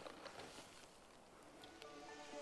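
Near silence: faint outdoor room tone, with background music just starting near the end.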